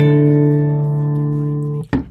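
A Bluetooth bar speaker's power-on tone: one steady, guitar-like note held for almost two seconds, then cut off with a short click near the end.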